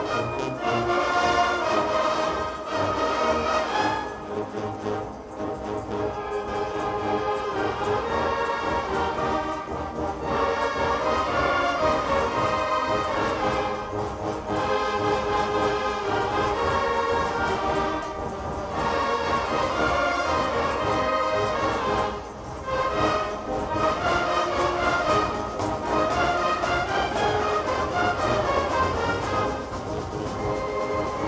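A large massed wind band of brass and woodwinds, with sousaphones, saxophones and clarinets, playing a piece together, its sound dipping briefly twice.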